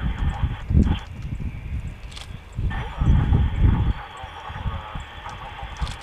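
Wind buffeting the camera microphone in irregular low gusts, strongest about a second in and again around the middle. Over it, a steady mid-range hiss switches on sharply near the start, drops out, and comes back just before the middle, running until near the end.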